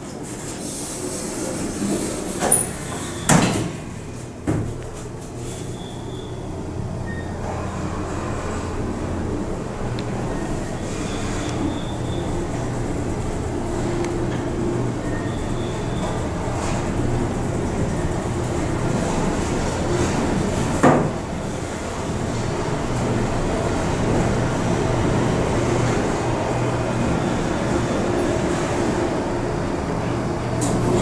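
1972 Otis traction elevator heard from inside the car: a few clunks as the doors shut in the first few seconds, then the car travels with a steady hum that slowly grows louder. A single sharp knock comes about 21 seconds in.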